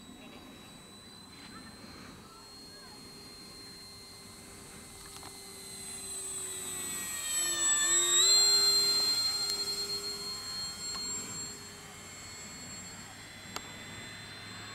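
Electric motor and propeller of an 800 mm Hawker Tempest foam RC warbird whining in flight. The whine grows louder as the plane makes a low pass close overhead, peaks about eight seconds in with a shift in pitch, then fades as it flies away.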